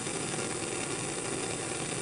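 Bunsen burner flame burning steadily: a constant, even rushing hiss.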